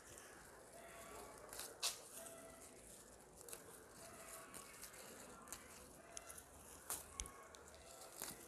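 Faint snapping and rustling of leaves and small stems being plucked by hand from a leafy branch, a few sharp little snaps among low rustling.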